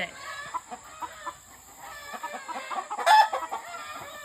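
Chickens clucking with short, scattered calls, and one brief loud squawk about three seconds in.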